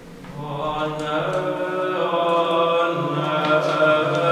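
Voices singing chant in long held notes, swelling in about half a second in. Hagia Sophia's reverberation has been imprinted on the singing digitally.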